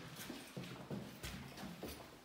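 Footsteps on bare, uncarpeted wooden boards: a few soft, irregular thuds.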